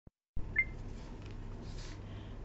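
Quiet room tone with a steady low hum, and a short high beep about half a second in.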